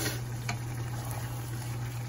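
Thick chicken meatball curry simmering in a cast-iron pan on a gas burner, bubbling softly, with two faint clicks about half a second apart near the start. A steady low hum runs underneath.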